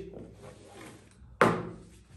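A single sudden knock on the table about one and a half seconds in, after a quiet stretch of low room sound.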